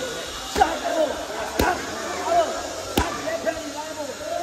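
Boxing gloves punching leather focus mitts during pad work: three sharp smacks, the last two about a second and a half apart.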